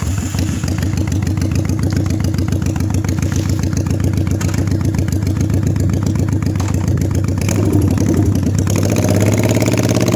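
1983 Honda VT750 Shadow's V-twin engine firing up at the very start and idling with an even, pulsing beat. Near the end it revs higher as the bike pulls away.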